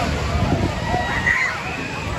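A fairground thrill ride running with riders aboard, a steady low rumble under a mix of riders' and onlookers' voices, with one higher cry about a second in.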